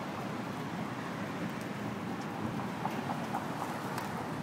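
Steady outdoor noise of wind and street ambience, with a few faint ticks in the second half.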